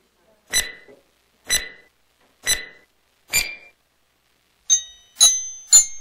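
Online one-minute countdown timer's sound: four sharp ticks about a second apart, then a quick run of ringing bell-like chimes starting near the end.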